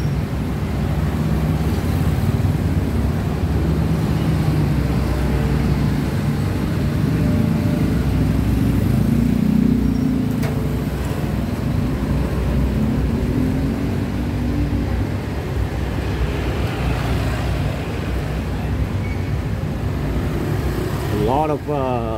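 Engine and road noise heard while riding in an open-backed passenger vehicle through busy city traffic; the engine note rises twice as the vehicle picks up speed.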